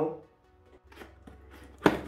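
Hands handling a cardboard product box, with one sharp knock of cardboard near the end after a few faint taps.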